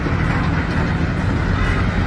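Steady rumble of heavy demolition excavators working, with a long-reach excavator chipping away at the building.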